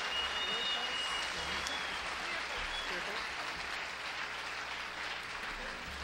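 Audience applauding steadily after a song, fading slightly toward the end.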